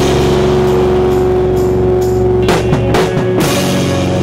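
Live punk rock band with electric guitars, bass and drum kit, loud and distorted, the guitars and bass holding one sustained ringing chord as the song closes, with a few drum and cymbal hits a little past the middle.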